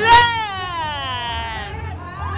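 A person's voice: a sharp click just after the start, then one long cry falling steadily in pitch.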